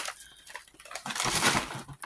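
Gift bag and its wrapping rustling and crinkling as a hand rummages through them, loudest a little past the middle.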